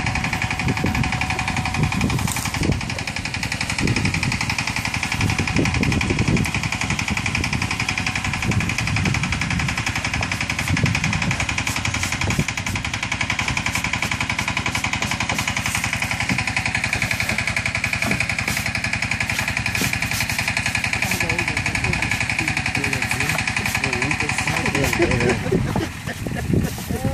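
Gold Konka concentrator's motor running steadily with a fast buzz and a high whine, though the unit is not turning; it cuts off just before the end.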